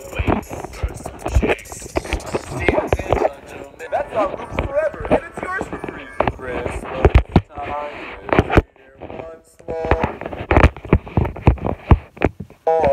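A voice singing over music, broken by frequent knocks and bumps of handling noise as the phone is swung about. A short quiet gap comes about nine seconds in.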